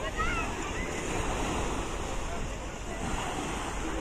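Small sea waves washing in shallow water at the shore, a steady surf noise with wind on the microphone. A brief high-pitched voice calls out just after the start.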